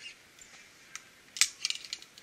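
Metal clicks and clinks of a zipline trolley and carabiners being handled and clipped onto the steel cable: one sharp click about one and a half seconds in, then a quick run of smaller clinks.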